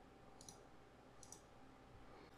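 Two faint computer mouse clicks, a little under a second apart, as dialog boxes are clicked shut, over near silence.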